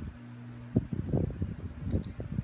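Plastic LEGO pieces handled in the hands, a cluster of soft knocks and clicks starting about three-quarters of a second in and ending with a sharp click, over a steady low hum.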